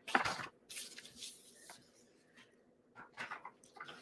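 Soft, brief rustles of paper being handled, a few short bursts with quiet gaps between them.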